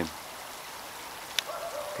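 Steady outdoor background hiss, with a single sharp click about a second and a half in.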